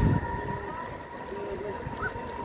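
Gauge 1 model train coaches rolling along the track close by, a low rumble that is loudest at the start and then eases. A steady high tone sounds throughout.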